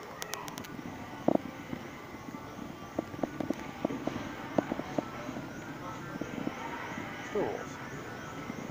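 Steady hum of a large hardware store's interior, with scattered light clicks and knocks throughout, and one spoken word near the end.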